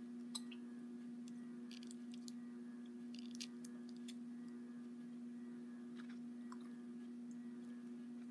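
Faint chewing of candy with a scattering of small clicks and crunches, over a steady low hum.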